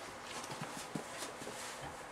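Faint, irregular knocks and shuffling from a person moving about and handling things close to the microphone, about half a dozen soft clicks spread unevenly over a low room hiss.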